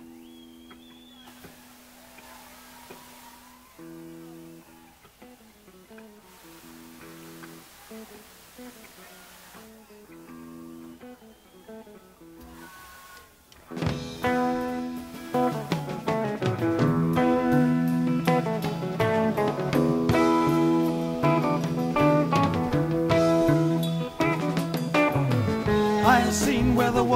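Live rock band on a soundboard recording: soft, sparse electric guitar notes between songs, then about 14 seconds in the full band comes in loudly with guitars, bass and drums, playing a song intro.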